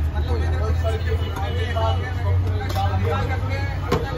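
Indistinct voices chattering over a steady low hum, with one sharp click near the end.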